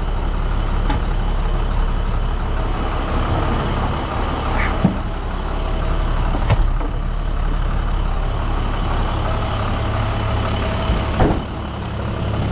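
Roll-off truck's diesel engine idling steadily, with a few sharp knocks, the loudest near the end.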